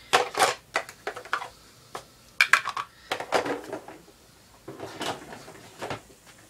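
Small plastic stacking paint-palette trays being taken out and handled, giving irregular groups of light plastic clacks and knocks.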